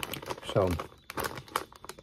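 Plastic snack bag of Pork King Good pork rinds crinkling and rustling as it is handled, a dense run of small crackles.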